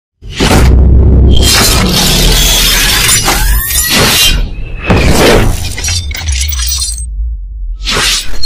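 Cinematic intro sound effects: a series of whooshing sweeps and glass-shattering hits over a deep, steady bass rumble, set to music.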